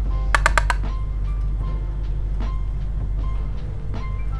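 Background music: a mellow instrumental track with a steady bass line and scattered held notes, with a quick run of short clicks about half a second in.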